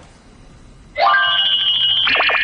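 Bell-like ringing tone with a fast trill, starting suddenly about a second in after a short lull: a transition sound effect between programme segments.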